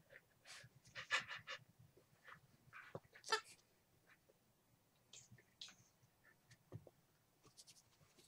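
A small dog panting faintly in quick, short bursts of breaths, strongest about a second in and again around three seconds in.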